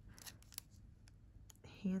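Faint scattered clicks and light rustling from a fan of plastic nail swatch sticks handled in a gloved hand. A woman's voice starts near the end.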